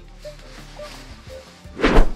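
Faint background music, then near the end a brief loud rustling thump as a synthetic insulated jacket is handled and set down.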